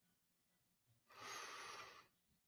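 Near silence, then a faint breath out, just under a second long, starting about a second in.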